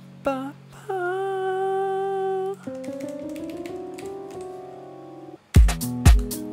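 Playback of a mellow house track in progress: a short sliding note and then a held, wavering lead note, followed by a sustained synth chord swell. Near the end a four-on-the-floor kick drum beat comes in, about two kicks a second.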